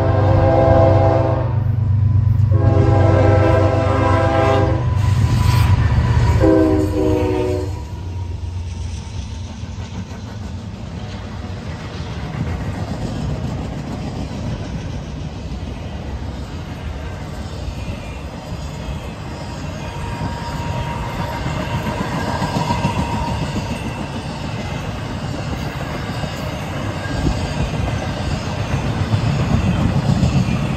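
A Norfolk Southern GE ES44DC diesel locomotive passing close by, its horn sounding several long blasts over a heavy engine rumble, the last blast lower in pitch as the locomotive goes by. Then a train of empty intermodal well cars rolls past with a steady rumble and wheel clatter.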